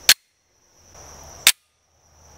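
Pistol slides slamming forward into battery as the slide release is dropped, two sharp metallic clacks about a second and a half apart: first the Glock 19 Gen 5, then the CZ P10C.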